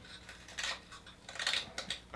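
Carving knife slicing small chips from a cottonwood bark face carving: a few faint, short scratchy cuts with pauses between.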